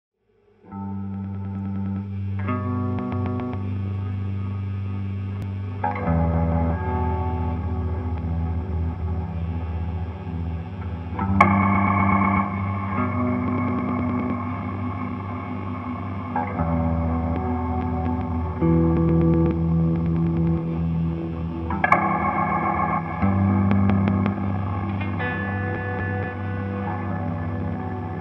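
Semi-hollow electric guitar played through effects pedals, including a Hologram Infinite Jets resynthesizer, in an ambient improvisation: chords struck every few seconds ring on and blur into a held low drone. The guitar comes in under a second in.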